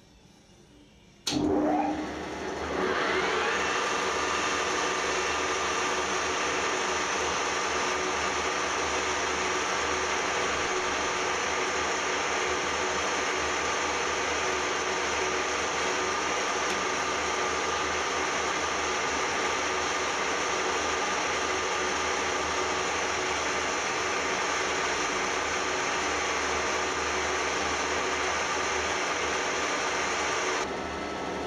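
Metal lathe switched on about a second in, spinning up with a rising whine, then running steadily while a two-wheel knurling tool rolls a pattern into a turning cast aluminium bar.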